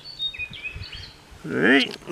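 Faint birds chirping in the background: short high notes stepping between pitches in the first second. Near the end a person makes a short vocal sound that rises and falls in pitch.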